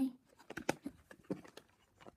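Light, scattered clicks and taps of small plastic toy wheelie bins being handled and moved by hand.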